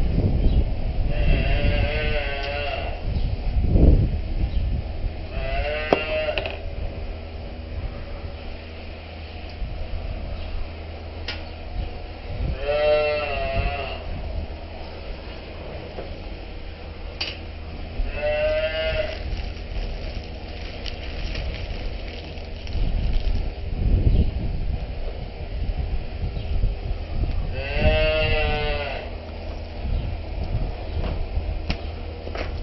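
Cattle calling out five times, each call about a second long with a wavering pitch, over a steady low mechanical hum.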